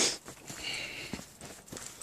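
Footsteps of a person walking on a woodland path, a few steps at a walking pace, with one louder step or knock right at the start.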